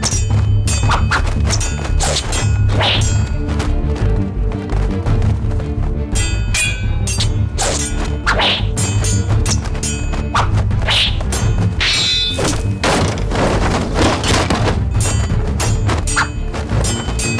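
Fight-scene sound effects, repeated thuds and whacks, over a dramatic music score with a steady pulsing low beat.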